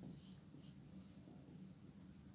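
Whiteboard marker writing on a whiteboard: about half a dozen short, faint strokes as letters are written.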